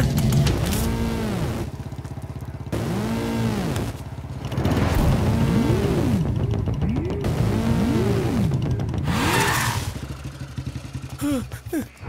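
Motorcycle engine sound mixed with a dramatic background score, with arching swells that rise and fall in pitch about once a second.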